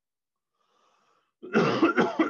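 A man coughing, a loud cough that breaks in suddenly about one and a half seconds in.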